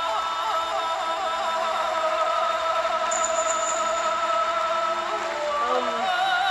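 Male singer with backing music, running through quick wavering turns and then holding one long high note for several seconds, which breaks into a new phrase near the end.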